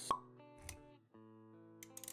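Intro music with a single sharp pop sound effect just after the start, the loudest thing in it, followed by soft sustained notes, a brief low thud and a few quick clicks near the end.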